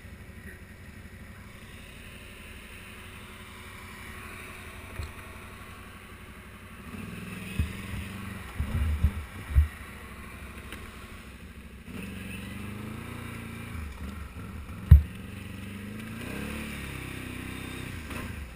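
ATV engine running at low speed as it crawls over rough ground, the note rising a little twice. A few knocks come from the machine around the middle, with a single sharp knock about fifteen seconds in.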